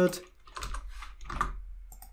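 A few soft computer keyboard keystrokes as a number in a query is retyped.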